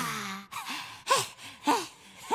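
A cartoon character's voice: a sigh falling in pitch, then short gasping sounds that rise and fall in pitch, about two a second.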